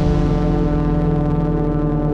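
A loud, deep cinematic music drone holding one low pitch with many overtones, steady throughout.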